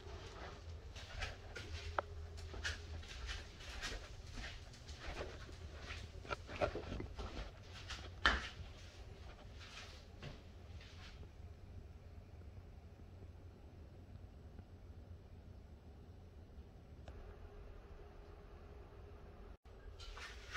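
Irregular footsteps and small handling knocks for about the first ten seconds, then faint room tone with a low steady hum.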